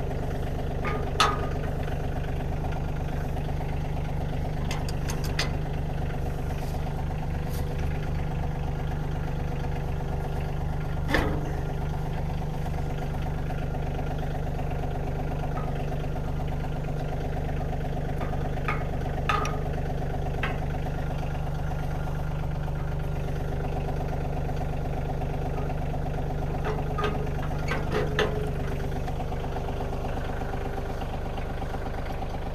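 Kioti CK2610 compact tractor's three-cylinder diesel idling steadily. Scattered sharp metal clinks and clanks come from the three-point hitch as the box blade's top link is turned by hand; the loudest is about eleven seconds in.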